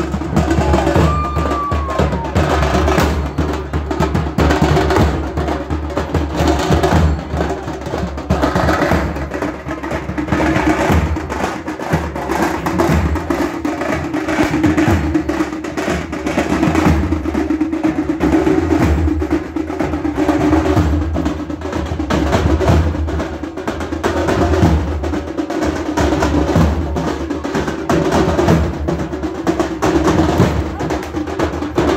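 Percussion-led music with drums struck in a dense, fast, continuous rhythm and a steady sustained tone under it; a short gliding tone sounds about a second in.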